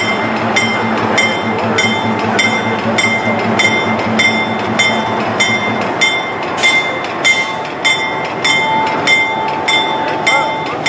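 Diesel locomotive's bell ringing steadily, about three strikes every two seconds, over the low running of the locomotive's engine as it creeps past. A faint steady whine comes in during the second half.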